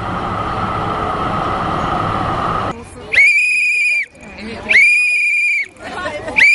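A noisy steady background that cuts off about two and a half seconds in, then a high, steady whistling tone sounding twice, each about a second long and about a second and a half apart.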